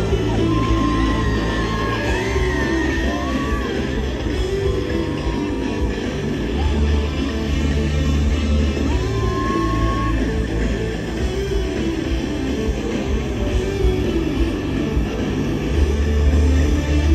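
Live band music from a stadium sound system, heard from far out in the audience. Deep bass notes are held and change every second or two, and a few long melody notes slide in pitch above them.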